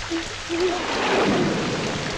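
Heavy rain pouring steadily, with a rumble of thunder swelling up about half a second in and holding for over a second. A low, wavering howl sounds in the first second.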